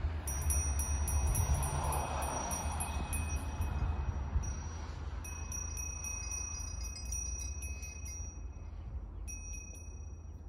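High, ringing chime-like tones, breaking off briefly about halfway through and again near the end, over a steady low rumble.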